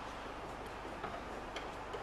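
A few faint, irregular light clicks of hand work with a small tool on a car's metal body panel, over a steady low hiss.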